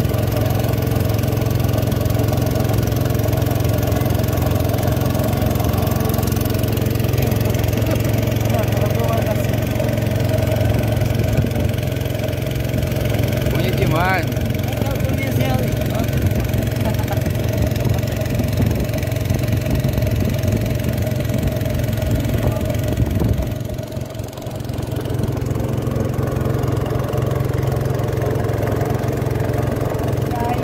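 Small boat's engine running steadily, with a low, even drone. It drops back briefly about three-quarters of the way through, then picks up again.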